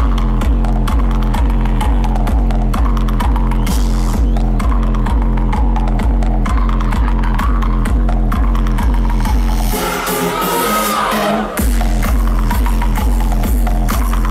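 Electronic dance music played loud over a festival sound system, with a steady kick drum at about two beats a second. About ten seconds in, the kick and bass drop out for a second and a half under a rising sweep, then the beat comes back in.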